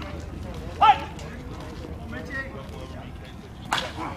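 A short shout from a player on the field about a second in. Near the end comes a single sharp crack of a slowpitch softball bat hitting the ball.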